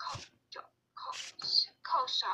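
A person's voice in short, broken syllables, with silent gaps between them.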